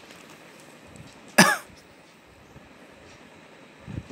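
A single short cough about a second and a half in.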